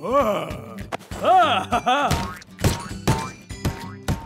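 Cartoon soundtrack: a character's wordless voice calls, rising and falling in pitch, over light background music, followed by a few quick cartoon knock and boing sound effects in the second half.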